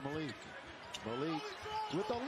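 Basketball game broadcast audio at low volume: a commentator talking over arena sound, with a basketball being dribbled on the court.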